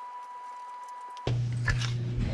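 A faint steady high-pitched tone over light hiss. About halfway through it cuts off and gives way to garage room sound: a steady low electrical hum, with the knocks and rustle of a handheld camera being moved.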